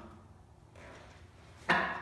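Near-quiet room tone with faint movement, then a sharp knock near the end as the practitioner's arm strikes the wooden Wing Chun dummy's arms.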